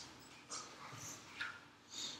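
Dry-erase marker squeaking on a whiteboard in a few short strokes while an equation is written.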